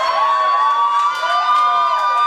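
A crowd cheering and squealing, with several high voices overlapping and one long high call held through most of the moment.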